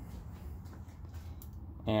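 Quiet room hum with a few faint, light clicks.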